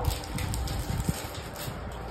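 Mitsubishi passenger lift car travelling, heard from inside the car as a low rumble, with scattered light clicks and rustle from the handheld phone.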